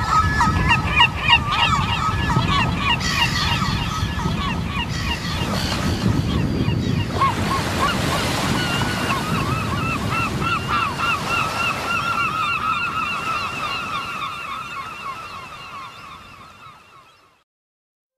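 A crowd of gulls calling over the low rush of surf, fading out near the end.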